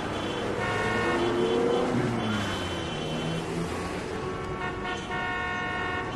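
Street traffic with vehicle horns honking about three times, each held for a second or so, over the steady noise of passing vehicles, one of whose engines rises and falls in pitch early on.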